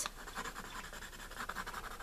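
Dry Derwent watercolor pencil scratching faintly and steadily on cold-pressed watercolor paper as an area is shaded in.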